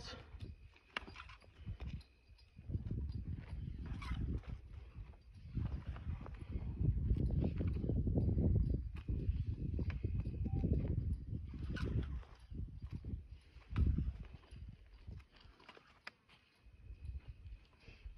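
A rope being coiled by hand: irregular low rustling and scraping as the loops are gathered, with a few soft knocks.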